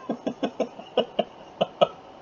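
A man chuckling under his breath: a string of about eight short, breathy bursts of laughter, unevenly spaced.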